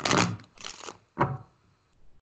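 A deck of cards shuffled by hand: three short papery rustling bursts, the first and loudest right at the start.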